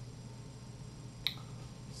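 A single short, sharp computer mouse click a little over a second in, over a faint steady low hum.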